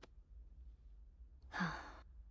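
A person sighs: one short breathy exhale about one and a half seconds in, over a faint low hum.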